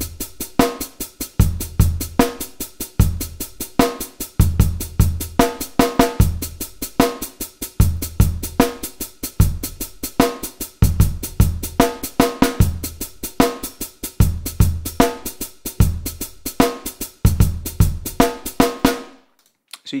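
MIDI-programmed drum kit beat playing back: kick, snare and rapid hi-hats in a steady loop, with swing quantize applied so the hi-hats shift into a shuffle feel while the main kick and snare hits stay on the grid. Playback stops about a second before the end.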